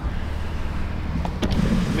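BMW engine idling: a low, steady rumble.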